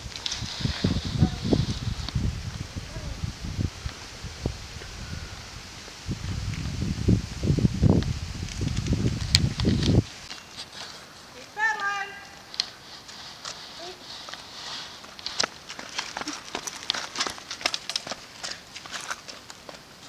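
Irregular low rumbling noise on the microphone that stops abruptly about halfway, followed by quieter outdoor sound with a brief distant voice and faint scattered clicks.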